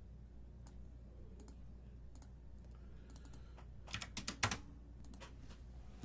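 Faint typing on a computer keyboard: scattered single key clicks, then a quick run of louder keystrokes about four seconds in.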